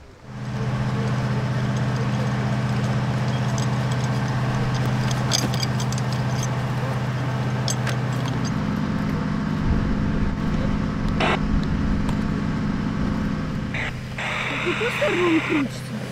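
An engine running steadily, its pitch stepping up about eight seconds in, with a few sharp clicks and knocks over it and faint shouts near the end.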